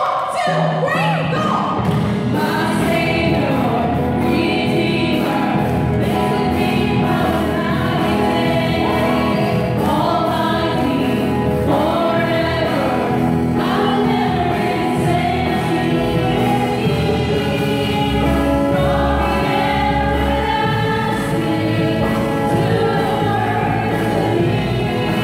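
A woman singing a contemporary worship song into a handheld microphone over amplified backing music, with deep bass notes growing stronger in the last third.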